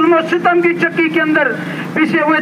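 A man praying aloud in Urdu through a loudspeaker public-address system, his voice pausing near the end, with a steady low hum underneath.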